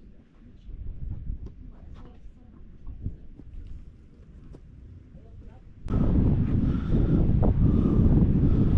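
Wind on the microphone at the seashore: a faint low rumble at first, then about six seconds in it suddenly turns loud and steady, buffeting the microphone.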